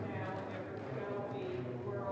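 A few voices singing a hymn verse without accompaniment, in slow held notes.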